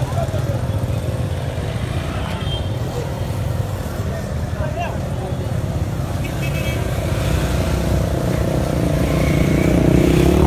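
Street noise: a steady low rumble of traffic and motorbikes, with distant voices.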